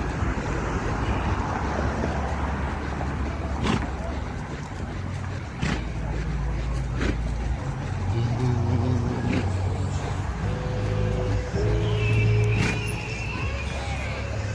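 Cars driving past on a road, with wind rumbling on the microphone.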